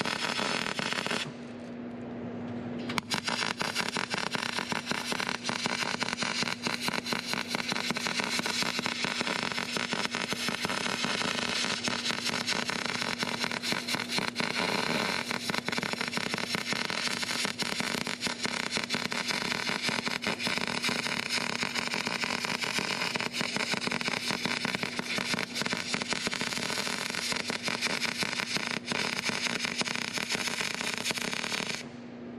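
MIG arc welding: a steady, dense crackle and sizzle of the welding arc as a weld bead is laid on a steel plate, over a low steady hum. The arc stops briefly about a second in and strikes again near the three-second mark.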